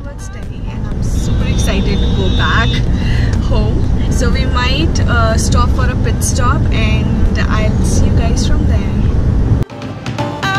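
Steady low rumble of a car's engine and tyres heard inside the cabin while driving, under a woman talking.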